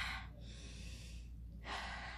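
A woman taking a deep breath: the tail of a long breath in, a pause, then a breath out near the end.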